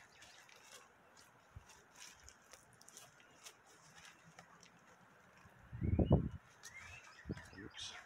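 Faint bird chirps outdoors, with light footsteps on grass and a brief low rumble about six seconds in.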